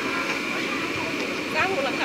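Cotton candy machine running, its spinning head giving a steady whirr with a thin high whine. A voice speaks briefly near the end.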